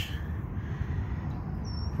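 Outdoor background noise, steady and low, with one short, high bird chirp near the end.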